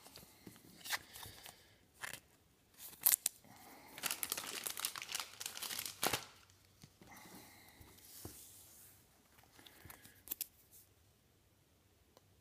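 Crinkling and rustling of a plastic card sleeve being handled as a mini trading card is sleeved, with a few sharp clicks; the loudest stretch of crinkling comes about four seconds in and lasts about two seconds.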